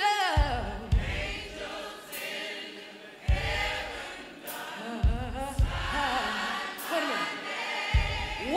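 Gospel music: a choir singing sustained notes with vibrato over a band, with a bass drum striking every second or two and occasional cymbal hits.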